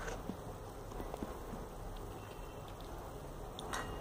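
Quiet room tone with a few faint, short clicks from small rubber pen grips being handled and pressed together by hand.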